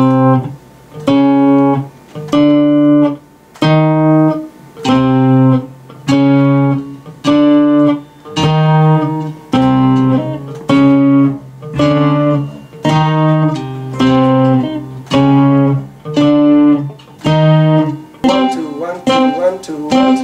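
Tap guitar played by two-handed tapping: a repeating figure of short chords, each a low bass note with higher notes over it, about one a second with brief gaps between. Near the end it turns into a denser run of overlapping notes.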